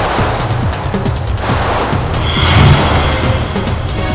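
Action film background score with a steady low pulse, with a rushing whoosh-like sound effect laid over it that swells to its loudest a little past the middle.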